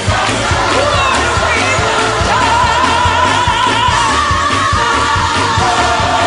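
A large gospel choir singing with instrumental backing, holding long wavering notes over a steady low pulse.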